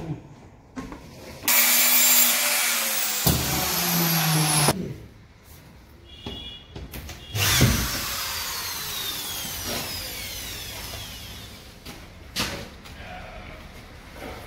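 Electric drill running in two bursts: one of about three seconds, then a second that starts sharply and winds down over several seconds with a falling whine. A sharp knock follows near the end.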